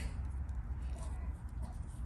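Faint clicks of a flex-head ratcheting box wrench being worked in the hands, its reversing mechanism being shown, over a low steady background rumble.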